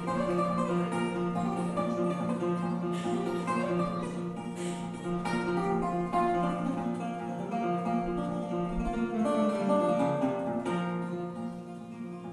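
Acoustic guitar picking an instrumental introduction, with a cello holding long low notes underneath.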